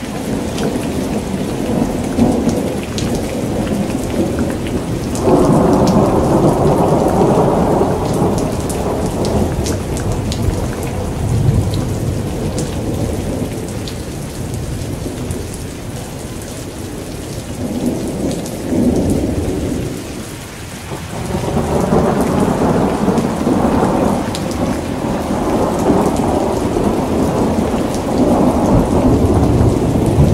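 Rain with rumbling thunder that swells and fades, loudest from about five to nine seconds in and again from about twenty-two seconds on.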